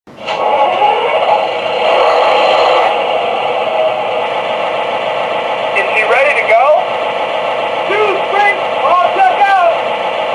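Onboard sound system of an MTH Premier O-gauge CSX 3GS21B genset locomotive model playing a steady diesel idle through its small speaker, with little bass. From about six seconds in, the model's recorded crew-talk voices play over the engine sound.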